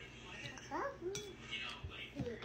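A metal fork clinking against a dish while someone eats, with one sharp clink about a second in.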